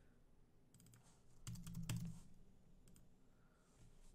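A few soft computer keyboard keystrokes and clicks in near quiet, with a short low hum halfway through while the clicks are loudest.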